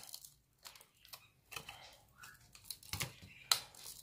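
Faint crackling and a few sharp clicks of a CD's hard plastic as the centre piece, cut along a melted line, is slowly pried out of the disc ring by hand.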